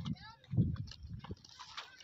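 A lamb coughing several times in short, sudden bursts, the sign of the respiratory illness it suffers from.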